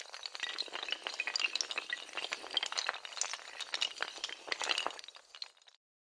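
Glass-shattering sound effect: a sharp hit, then a dense clatter of clinks and tinkling pieces that stops abruptly shortly before the end.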